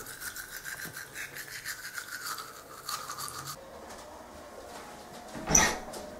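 Teeth being brushed with a manual toothbrush: quick, even scrubbing strokes for about three and a half seconds, then stopping. A short, louder burst of noise follows near the end.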